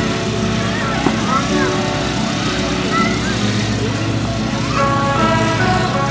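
Fairground ambience: a steady motor hum with scattered high-pitched voices calling out, and music starting up about three-quarters of the way through.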